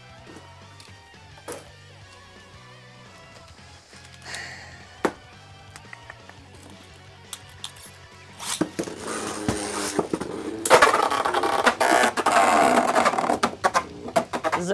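Background music with a few light plastic clicks. From about nine seconds in comes a loud rattling whir of Beyblade spinning tops launched into a plastic stadium, spinning and scraping on the stadium floor.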